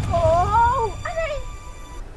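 A young woman crying out in distress, two high, wavering wails: a long one that rises and bends, then a shorter one that falls away.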